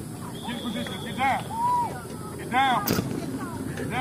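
High-pitched voices calling out across an open field, with a single sharp click about three seconds in.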